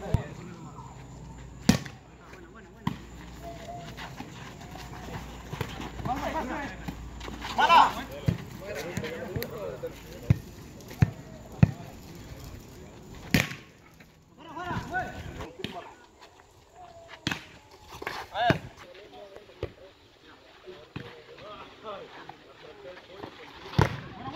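A volleyball being struck by hands during outdoor play, a few sharp slaps spread through the rally, among players' shouts and talk.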